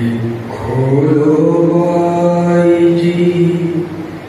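A man singing unaccompanied into a microphone, sliding up into one long held note about half a second in and sustaining it almost to the end.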